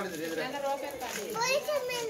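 Several children's voices talking and calling out.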